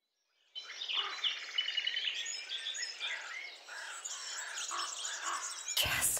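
Birds chirping and singing, many short calls and trills overlapping over a faint outdoor hiss, starting about half a second in.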